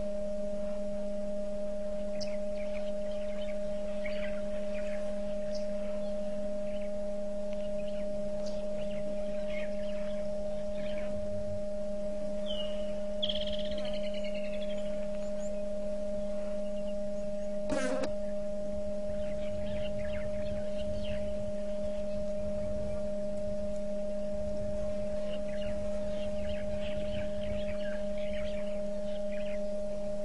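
A steady hum of constant tones, with faint bird chirps scattered over it, a short bird call about thirteen seconds in, and one sharp click about eighteen seconds in.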